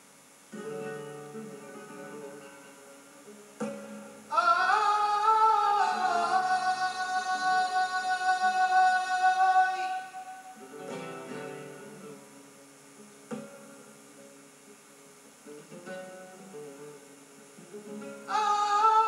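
Flamenco siguiriya: a flamenco guitar plays, and about four seconds in a male flamenco singer enters with one long sung line that rises and then holds a steady pitch for about six seconds. The guitar then plays on alone.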